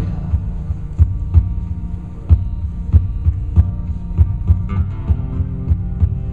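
Acoustic guitar played in an instrumental passage: low notes keep ringing under deep, percussive thumps that come about three times a second, a little unevenly.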